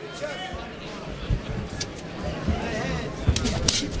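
Arena crowd and cageside voices shouting in the background, with a few dull thumps as the two fighters close in on each other on the cage canvas.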